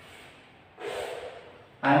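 A man's short, sharp breath through the nose about a second in, then his speech begins near the end.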